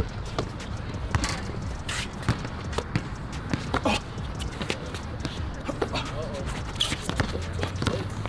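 Basketball being dribbled on an outdoor court: a run of irregular ball bounces during one-on-one play, with players' voices faint in the background.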